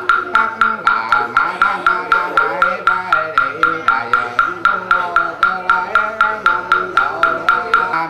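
A small Buddhist wooden fish (mõ) struck with a mallet at a steady pace of about four knocks a second, each knock with a short, bright ringing tone. It keeps time under a slow chanted melody.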